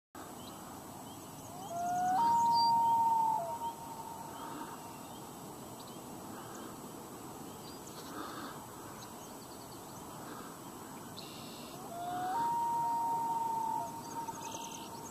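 Two long calls about ten seconds apart, each a short lower note rising into a higher note held for about a second, over a faint steady background with scattered faint high chirps.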